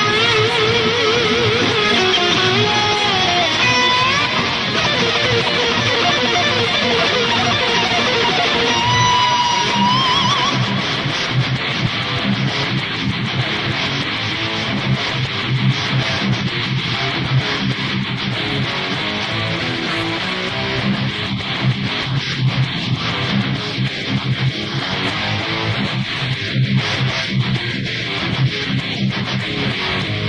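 Heavy-metal electric guitar playing a lead line with wide vibrato and pitch bends, holding a high note about nine seconds in. It then switches to a fast, low, chugging rhythm riff for the rest.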